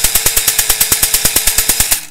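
Motorized Nerf blaster with a 3D-printed full-automatic conversion kit cycling its firing mechanism in full auto: a rapid, even clatter of about seven clacks a second over a motor hum, which stops suddenly at the end.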